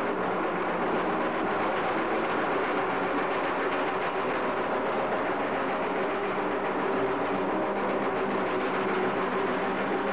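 Raw black metal cassette-demo recording: distorted guitars in a dense, unbroken wall of noise, dull and muffled in the top end.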